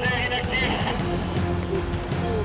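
Background music with sustained low notes, with a brief thin voice in the first half second.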